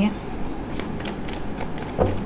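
A deck of tarot cards being shuffled by hand: a quick, irregular run of light card clicks and slides.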